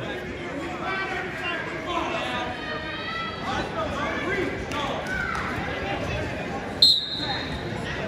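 Spectators and coaches talking and calling out in a large gymnasium, then about seven seconds in a short, sharp blast of the referee's whistle restarting the wrestling bout.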